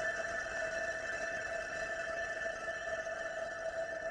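Steady electronic drone of two held tones, one middling and one higher, over a faint hiss: the lingering tail of the film's ambient soundtrack music.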